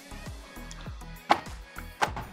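A pair of sliding glass balcony doors being pulled shut, with one sharp knock as the panels meet about a second in, over soft background music.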